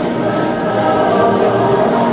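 A choir singing a slow traditional song in long held notes, filling a large roofed rugby stadium.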